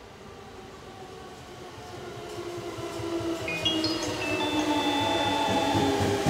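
JR Musashino Line electric commuter train arriving and braking, growing steadily louder as it pulls in. Its motors whine in several tones that fall in pitch as it slows, with a few high tones stepping up in pitch about three and a half seconds in.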